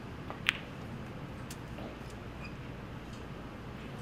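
Snooker cue tip striking the cue ball: one sharp click about half a second in, then a fainter click about a second later.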